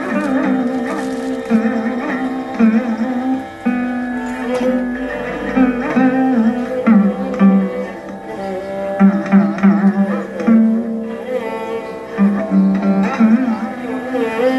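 Chitraveena, a fretless slide-played lute, playing a Carnatic melody full of gliding, bending notes over a steady drone, with a violin following along.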